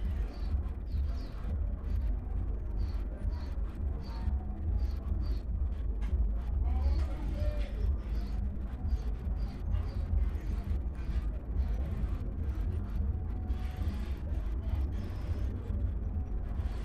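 Steady low background rumble with a faint general hiss, and a few faint short high chirps scattered through.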